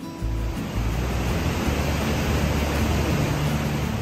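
Rushing water of a mountain gorge: a steady roar that swells in the middle and fades near the end, over background music.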